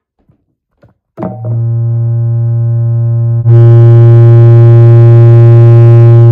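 A single low, steady electronic note held without wavering, very loud, starting a little over a second in and turning louder and brighter about halfway through.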